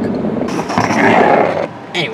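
Handheld camera being picked up and moved around, its body rubbing and rustling against the built-in microphone in a loud noisy burst that stops abruptly near the end.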